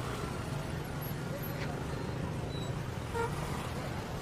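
Steady road-traffic noise heard from a moving two-wheeler or vehicle: a low, even engine hum under a wash of road noise.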